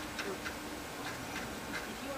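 Faint, irregular soft ticks of a bristle brush dabbing and stroking paint onto a canvas.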